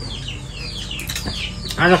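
Birds chirping in the background: short, high chirps, each falling in pitch, several a second. A person laughs near the end.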